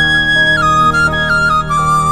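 Background music: a flute melody of held notes stepping down in pitch over a steady low drone.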